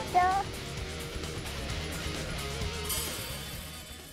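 Background music from the edited soundtrack, with a brief voice right at the start; the music fades away toward the end.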